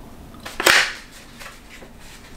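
A single brief, sharp scratching noise with a click in it, about half a second in, from the pen and paper planner being handled at a desk.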